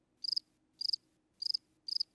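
Cricket chirping sound effect: four short trilled chirps about half a second apart, the cartoon cue for an awkward silence after a question goes unanswered.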